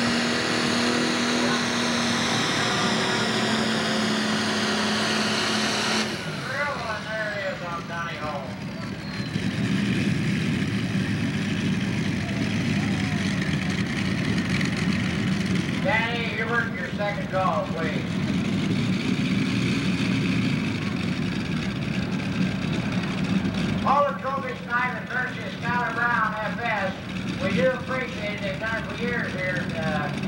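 International 966's six-cylinder IH diesel pulling the sled at full throttle, its revs slowly sagging under the load, then shut back abruptly about six seconds in. The turbocharger's whine then winds down over a few seconds while the engine settles to a steady idle.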